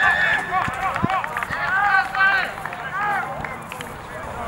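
Shouted calls from rugby players and sideline spectators, several short voices overlapping, with a couple of dull thumps about a second in.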